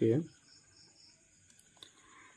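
The tail of a spoken word, then faint, evenly repeating high-pitched chirping in the background, with a single small click near the end.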